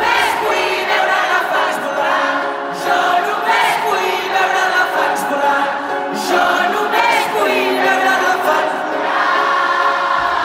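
A live arena concert: a large crowd sings along in chorus with the lead singer over a light guitar accompaniment, with the bass dropped out.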